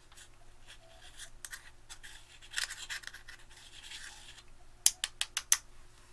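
Metal tool scraping and crumbling pressed eyeshadow out of its pan, a dry scratchy sound that thickens midway. Near the end come about five sharp taps in quick succession.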